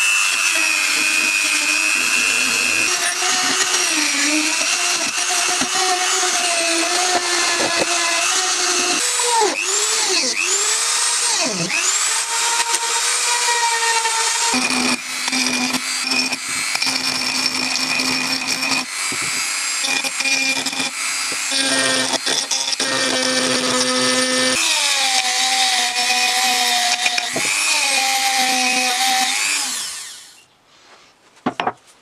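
Handheld rotary tool running at high speed with a steady high whine as its small bit works the aluminium gear housing. The pitch dips and swoops when the bit is pressed into the metal, about a third of the way through. The whine stops abruptly at the end.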